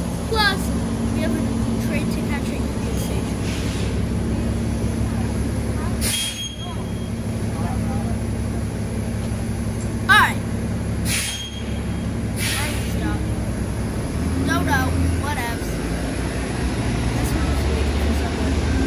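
Underground bus-and-subway station ambience: a steady low mechanical hum, with two short hissing bursts like bus air brakes releasing, about six and ten seconds in. Passersby's voices come and go.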